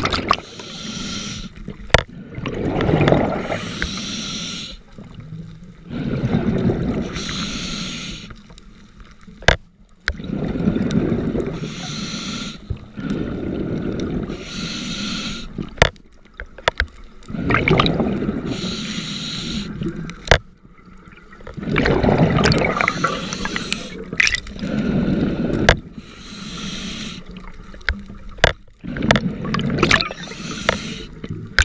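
A scuba diver breathing underwater through a regulator: a hissing inhale followed by a bubbling, gurgling exhale, about one breath every four to five seconds, with scattered sharp clicks.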